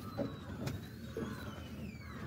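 Piaggio Ape E-City FX electric three-wheeler under way: a faint electric motor whine sliding down in pitch over a low road rumble, with a few knocks and rattles from the body on a rough dirt road.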